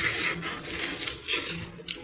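Biting and chewing a roast goose leg, meat and skin together, in an irregular run of short wet crackles and smacks.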